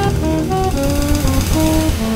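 Small jazz group recording: a saxophone plays a melodic line of short stepped notes over double bass and busy drums with cymbal wash.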